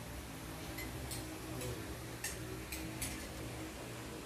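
About six light, sharp clicks at irregular intervals, from the small snap clips of clip-in hair extensions being handled at the head, over a low steady hum.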